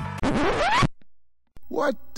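A quick, steeply rising pitch sweep cuts off suddenly, followed by about half a second of near silence. A man's voice begins near the end.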